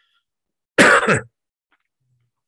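A man coughs once to clear his throat: a single short, loud burst just under a second in.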